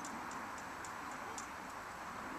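A run of light, high-pitched ticks, irregular and about three or four a second, over a steady background hiss.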